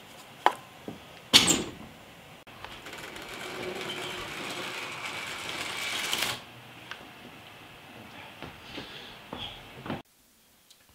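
A sharp click and then a louder knock of hard plastic as a hinged 3D-printed mold is handled. Then a steady mechanical whir that builds over about four seconds and stops suddenly.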